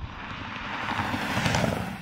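A road vehicle driving past: tyre and road noise swelling to a peak about one and a half seconds in, then fading.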